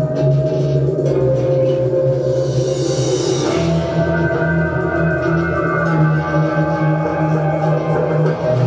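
Live heavy rock band playing loud sustained guitar chords over drums, without vocals. A cymbal swell rises about three seconds in, and the low notes grow heavier just after it.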